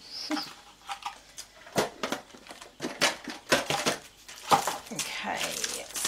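Hands handling craft supplies in a plastic storage box: a run of small clicks and taps as pieces are dropped into the compartments, with a brief rustle of packaging about five seconds in.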